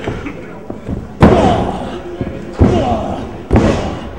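Three loud impacts on a wrestling ring's canvas, the first the loudest, coming a second or so apart. Each one is followed by crowd yelling.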